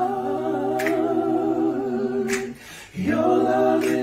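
Unaccompanied singing voices in long held notes, with a brief break between phrases just before three seconds in.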